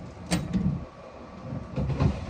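Kitchen handling noises: a sharp click about a third of a second in, then a few soft knocks as food and utensils are moved about on a counter.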